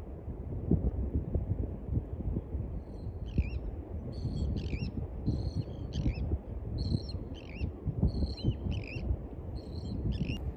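Wind rumbling on the microphone throughout. From about three seconds in, birds flying past give a series of short, high calls, each dropping in pitch, about two a second.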